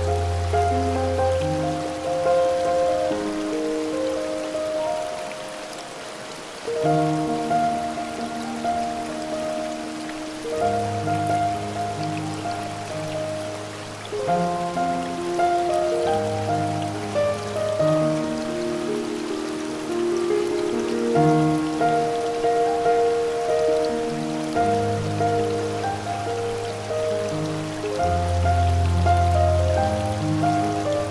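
Slow solo piano music, with low bass notes every few seconds, laid over a steady hiss of rushing water from a waterfall recording.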